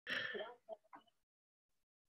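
A person briefly clearing their throat into a computer microphone, followed by two faint short sounds, all within the first second.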